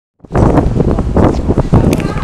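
Wind buffeting the microphone outdoors: loud, rough rumbling noise that starts abruptly a fraction of a second in.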